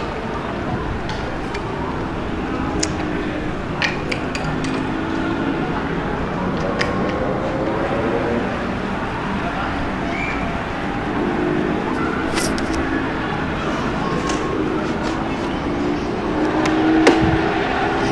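Open-air football pitch ambience: a steady background hum with distant players' voices calling across the field, louder near the end, and a few short sharp taps.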